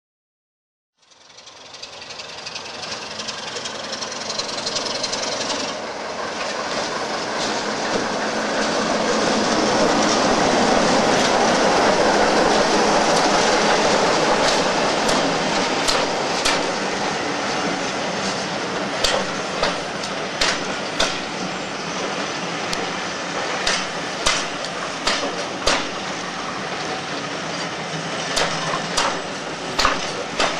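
A heritage diesel locomotive passing under power with a rake of coaches: its engine noise swells up to loudest about ten seconds in and then eases. After that the coach wheels clack over the rail joints in a run of sharp clicks.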